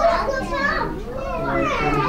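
People talking, among them a child's voice, in unbroken chatter.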